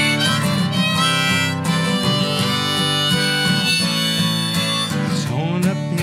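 Diatonic harmonica on a neck rack playing a melody over a strummed steel-string acoustic guitar, in the instrumental intro of a folk song.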